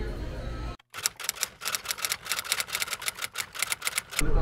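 A rapid run of typewriter-style key clicks, roughly seven a second, starting just after a brief dead-silent cut about a second in: a typing sound effect laid under a title card. Before the cut, low room noise from a dining area.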